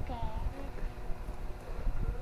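Scissors cutting the packing tape on a cardboard box, with faint clicks and a low handling rumble. A short voice is heard right at the start.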